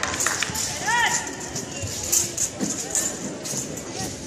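Indistinct voices and murmur in a large sports hall, with scattered short sharp clicks and a brief rising-and-falling squeal-like tone about a second in.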